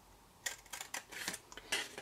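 Scissors snipping through cardstock: a quick run of short, crisp cuts starting about half a second in.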